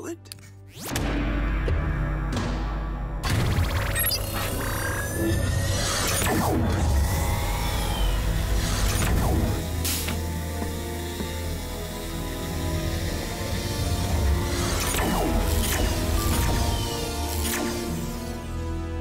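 Cartoon sci-fi machine sound effects over music: a fuse snaps into place, then a loud, low electrical hum starts about a second in as the power comes back on, with sliding whooshes and several sharp zaps and crackles.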